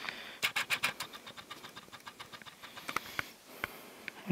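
Faint, irregular clicks and light handling noise, thick in the first second and a half and sparse after, over a low hiss.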